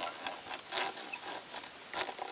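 Old two-speed hand-cranked drill boring into a wooden post: the gears turning with an irregular clicking, several clicks a second, over the scratch of the bit cutting the wood.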